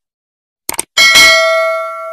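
Sound effects of a subscribe-button animation: a quick double click a little under a second in, then a bell ding with several ringing tones that fades out over about a second and a half.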